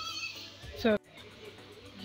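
Faint music and a brief voice in a clothing shop. About halfway through the sound cuts off abruptly, and only low shop background noise remains.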